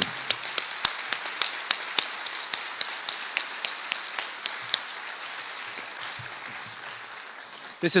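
Audience applauding, with sharp single claps standing out over the patter; the applause gradually fades away over the span.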